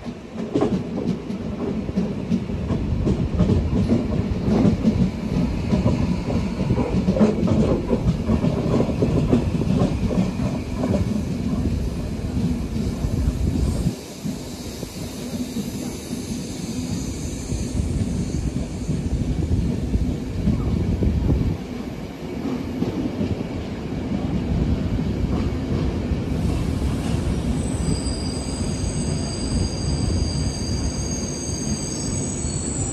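Nightjet sleeper train rolling slowly into a terminus station, with a steady rumble of wheels on the rails and quick clattering clicks over the points in the first part. Near the end a high, steady squeal sets in as the train slows toward its stop.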